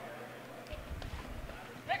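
Faint pitch-side sound of a football match: distant players' voices calling, with a few soft low thuds about a second in.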